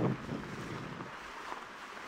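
Faint, steady rushing noise of wind on the microphone.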